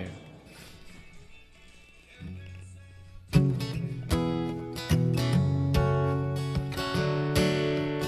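Acoustic guitar with a capo, strummed in chords with a steady rhythm starting a little over three seconds in, after a low held note that sets in about two seconds in.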